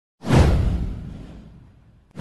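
A whoosh sound effect with a low rumble under it. It hits suddenly a moment in and fades away over about a second and a half.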